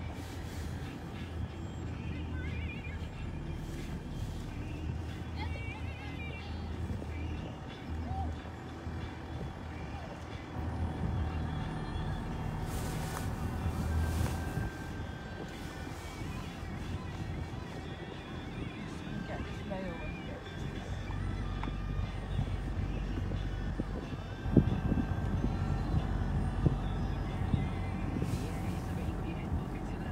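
A steady low rumble with faint, indistinct voices in it; a sharp bump about three-quarters of the way through, after which the rumble sits deeper.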